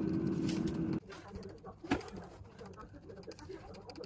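Air fryer fan motor running with a steady hum that cuts off abruptly about a second in, followed by faint clicks and handling noise.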